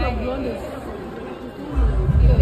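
Several voices chattering over one another, with music underneath.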